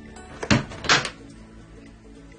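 A Yum Asia Kumo rice cooker's hinged lid being shut: two sharp clacks about half a second apart.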